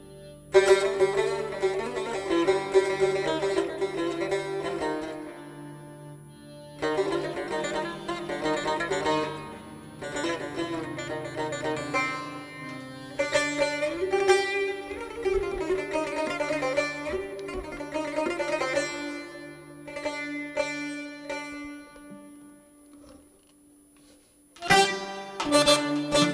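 Instrumental Turkish folk music: a bağlama played with a plectrum over an accordion, coming in phrase by phrase. It thins out shortly before the end, then comes back in loudly.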